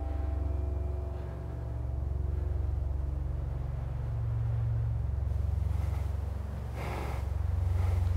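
A low, steady rumble that swells and eases a few times, with a brief soft hiss about seven seconds in.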